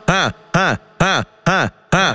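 Brazilian funk beat with no vocals: a short electronic note with many overtones whose pitch swoops up and back down, repeated evenly about twice a second.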